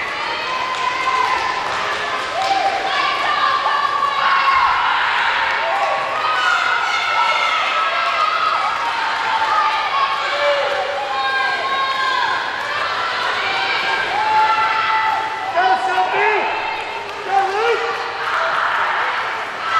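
Young teammates on the pool deck shouting and cheering on swimmers during a freestyle race, many overlapping drawn-out yells that go on throughout.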